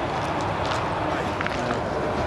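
Indistinct chatter of nearby onlookers over the steady engine noise of a Boeing VC-25A (Air Force One, a 747) taxiing.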